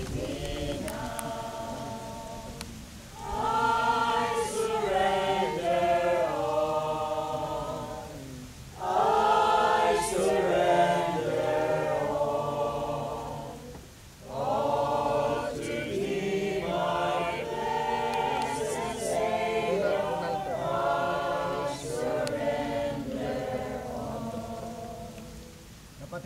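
A group of people singing a hymn together in unison, without instruments, in long phrases with brief pauses between them.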